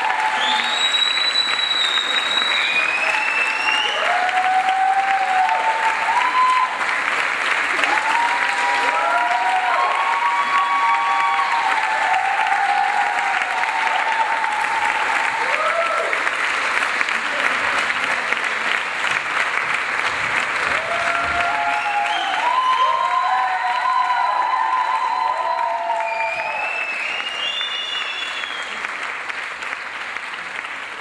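Theatre audience applauding steadily, with voices calling out over the clapping at times; the applause fades away near the end.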